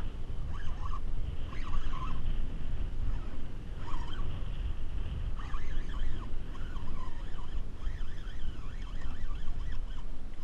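Wind buffeting a small action-camera microphone over choppy water around a kayak, a steady low rumble with splashing and a faint thin whine above it.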